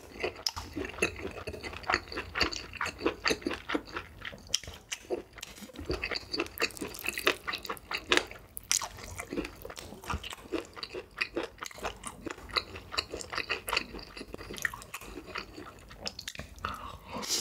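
Close-miked chewing: wet, crunchy mouth clicks and snaps from eating grilled kielbasa sausage and saucy instant noodles, with a longer rushing sound about halfway through.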